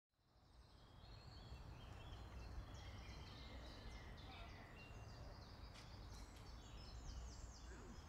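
Faint woodland birdsong: many short chirps and quick trills from several small birds, fading in from silence over the first second, over a low steady rumble.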